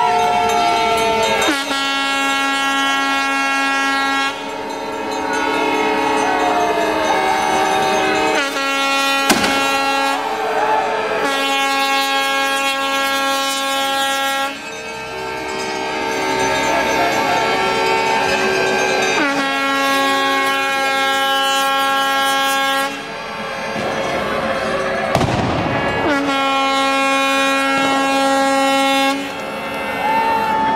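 Boat horns sounding a series of long, steady blasts a few seconds each, sometimes two pitches at once.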